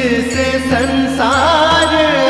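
Hindu devotional mantra music: a sustained melody that bends and wavers in pitch over a steady low drone.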